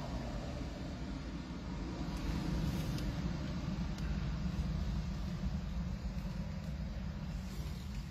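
Low, steady engine rumble heard from inside a car, swelling slightly in the middle and easing off again.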